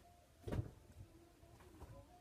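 Quiet handling sounds from a rubber-band loom pencil grip being worked onto a pencil, with one soft knock about half a second in.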